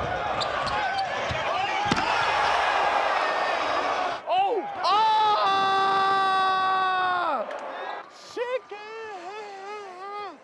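A basketball dribbled on a hardwood court over arena crowd noise, with a sharp knock about two seconds in. About halfway through, a man lets out one long held shout, "Ahhh!".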